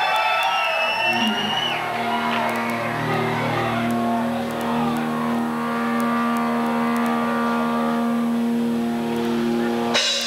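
Amplified electric guitar: high feedback squeals sliding in pitch, then a low distorted note held and ringing steadily until the band comes in right at the end.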